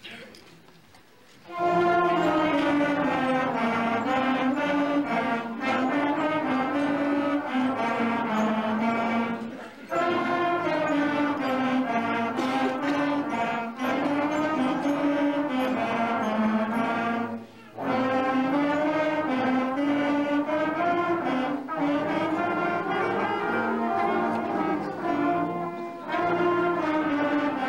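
School concert band of brass and woodwinds (trombones, flutes, clarinets) playing together, starting about a second and a half in after a brief hush, with short breaks between phrases.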